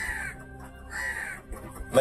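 A bird calling twice, about a second apart, over soft background music.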